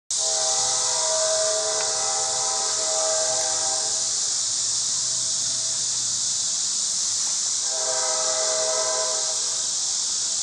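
A steady, multi-toned horn-like blast sounds twice, a long one of about three seconds and a shorter one near the end, over a constant high-pitched hiss.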